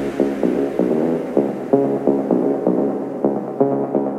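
Electronic dance music in a breakdown: a repeating, pulsing synthesizer riff of several notes a second in the middle range, with the deep bass fading out early on and no kick drum.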